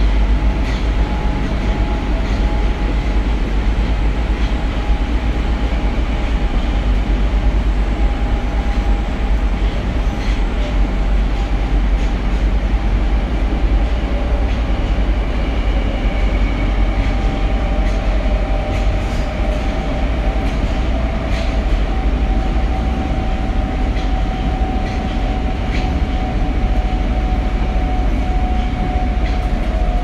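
Tokyo Metro 02 series subway train running at speed, heard from inside a passenger car: steady rumble and rolling noise with faint clicks of the wheels over rail joints. A steady whine runs underneath and starts to fall in pitch near the end.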